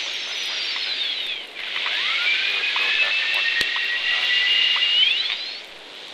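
Shortwave radio being tuned down the dial around 9.1 MHz between stations: a steady hiss with paired whistles that sweep down, then rise and hold steady, then rise again as the tuning passes across signals. A single click about halfway through.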